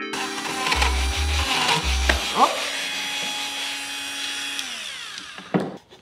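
Hyper Tough 12-volt cordless rotary tool sanding plywood, a steady high whine and grinding hiss, over electronic background music with heavy bass beats. Near the end the music slides down in pitch and stops.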